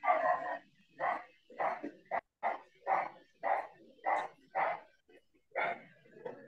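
A dog barking over and over, about two barks a second, with short gaps between barks, heard through a video-call microphone.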